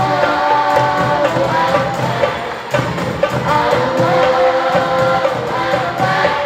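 Marawis ensemble: girls singing a melody into microphones over marawis hand drums beaten in a steady rhythm.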